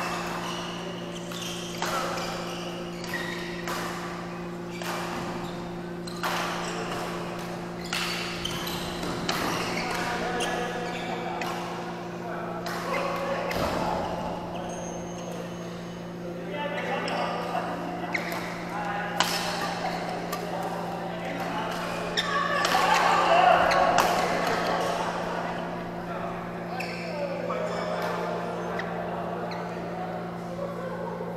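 Badminton rackets striking a shuttlecock in a large echoing sports hall: short sharp hits come every second or so, irregularly, from several courts, over a steady low hum. People's voices carry through the hall and are loudest about three quarters of the way in.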